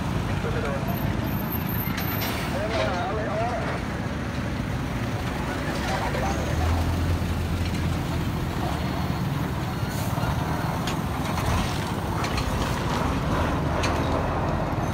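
Steady road traffic on a busy highway, with cars, motorbikes and trucks passing close by; a heavy truck's low rumble swells as it passes about seven seconds in.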